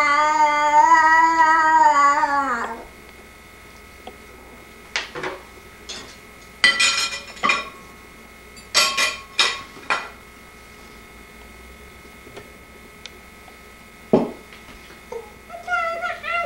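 A toddler makes one long, wavering, sung-out vocal sound that stops under three seconds in. Then come several short knocks and scrapes of a spoon against a plastic high-chair tray.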